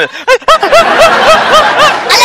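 A person laughing in a quick run of about seven short 'ha' syllables, each rising and falling in pitch, starting about half a second in.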